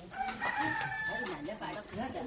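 A rooster crowing once: a single held call of about a second, over the talk of onlookers.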